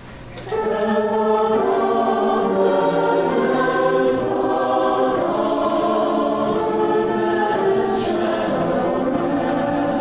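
Church choir singing an anthem in sustained, shifting chords. There is a brief dip for a breath at the very start before the voices come back in.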